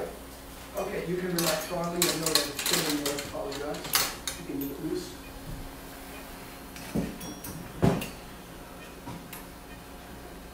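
Steel surgical instruments clinking and clattering against each other, with several sharp knocks, the loudest about four seconds in and two more near the end. A steady low hum runs underneath.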